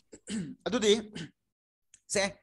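A man's voice: a few short vocal sounds in the first second or so, then a pause.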